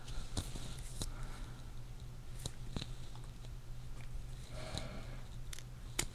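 Faint, sparse clicks and handling noise from fingers and a syringe working at the ear while fluid is drawn out of a swollen cauliflower ear, over a steady low electrical hum from the lav mic.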